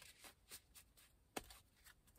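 Near silence, with a few faint soft taps and one short click about a second and a half in from a deck of tarot cards being handled.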